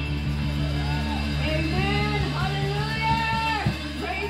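Electric keyboard holding a sustained chord, amplified through the PA, while a woman's voice sings long, arching phrases over it from about a second in, pausing briefly near the end.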